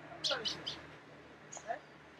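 Birds chirping outdoors: a quick cluster of short, high chirps about a quarter of a second in, and another brief call with a falling note near the end.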